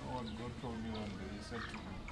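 A person speaking for about a second and a half, then a short pause.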